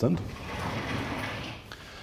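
A vertical sliding chalkboard panel pushed up in its frame, running along its tracks for about a second and a half before it stops.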